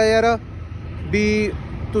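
A man's voice in two short, drawn-out utterances, over a steady low background rumble.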